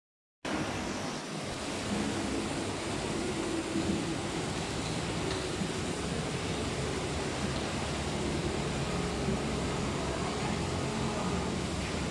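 Steady ambient noise: an even hiss over a low rumble, with no distinct events, starting just after the first half-second.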